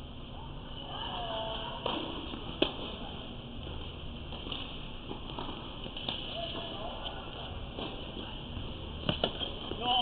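Tennis rally: sharp pops of the ball off racket strings and court, spaced a few seconds apart, with two close together near the end.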